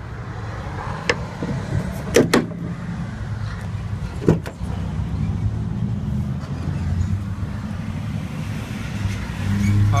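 Diesel engine of a Hino 338 truck idling steadily, with sharp clicks and knocks from the cab door latch as the driver's door is opened: one about a second in, two close together a little after two seconds, and one more past four seconds.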